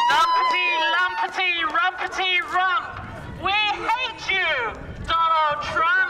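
A loud voice calling out through a megaphone in drawn-out sounds that rise and fall in pitch, with no clear words.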